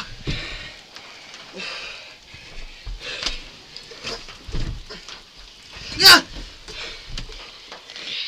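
People wrestling on the floor: grunting, panting and scuffling. There is one loud vocal outburst about six seconds in.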